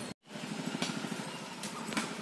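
A small engine running steadily off to one side, with a fast low pulse. The sound cuts out for a moment just after the start, then returns.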